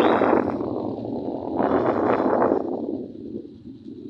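Gusting wind noise on the microphone of a camera moving along a road, loud at first, dipping briefly, swelling again and then fading away toward the end.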